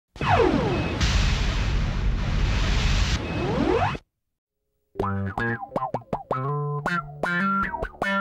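A loud, noise-filled intro sound effect lasts about four seconds, with sweeps falling in pitch at its start and rising at its end, then cuts to silence. About five seconds in, an electric bass starts playing a funk groove of short, bending notes.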